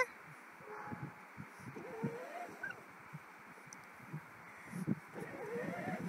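Battery-powered children's ride-on Raptor quad running slowly over grass: a faint steady noise from its electric motor and plastic wheels, with a few soft bumps. It is still in its low-speed setting.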